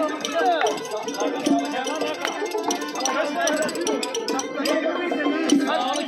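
Live Khorezmian folk music with a plucked long-necked lute and a steady beat of sharp strikes, mixed with the voices of the dancing crowd.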